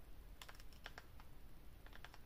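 Near silence, with a few faint, irregular clicks in small groups.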